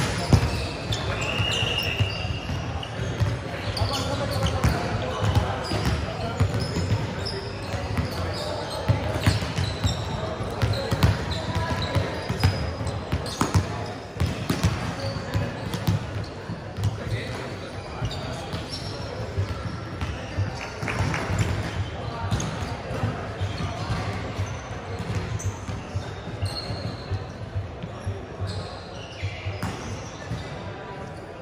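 Volleyballs being hit and bouncing on a wooden sports-hall floor during warm-up: many irregular slaps and thuds, with players' voices chattering in the background of a large indoor hall.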